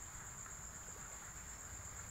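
Faint, steady high-pitched insect chorus (crickets) over a low background rumble.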